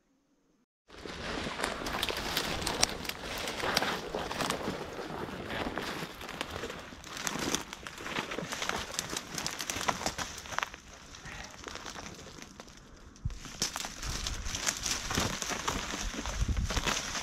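Dry bramble stems and bare twigs crackling and rustling as someone pushes through a dense thicket on foot. It starts after about a second of silence.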